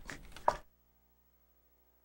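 A few short knocks or clicks, the loudest a sharp one about half a second in, then the sound track cuts out to dead silence.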